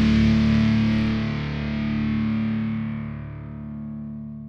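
Melodic death metal track ending on a held distorted electric guitar chord that rings out and fades.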